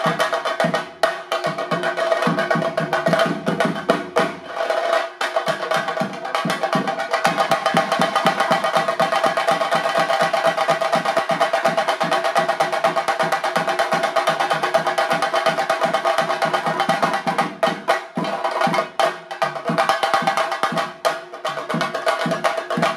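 Chenda drums beaten with sticks in a fast, dense Theyyam rhythm, the strokes packing tighter from about five seconds in and loosening again near the end. A steady pitched tone holds over the drumming.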